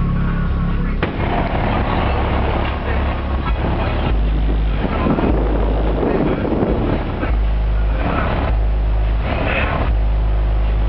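Two MTX 9500 12-inch car subwoofers playing a bass test at high volume: deep, steady bass notes that shift pitch every second or so. A rattling buzz from the car's body rides over them, loudest around the middle and near the end.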